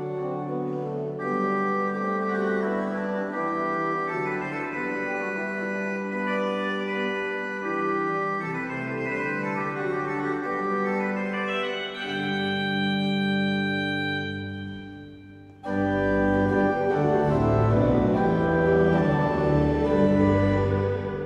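Pipe organ playing a hymn introduction in slow, held chords. Just before the end it dies away for a moment, then re-enters louder and fuller with deep pedal bass.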